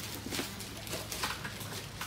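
Light rustling and clicking of plastic blister-packed IV cannulas being handled in their cardboard box, a few irregular clicks, over a low steady hum.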